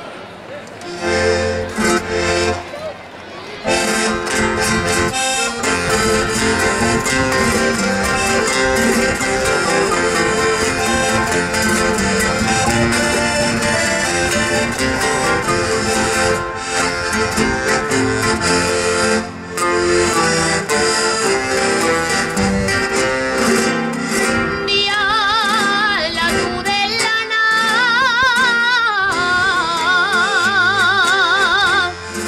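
Instrumental introduction of a Navarrese jota played by an accompanying band with guitar. About 25 seconds in, a woman's voice enters singing the jota with strong vibrato.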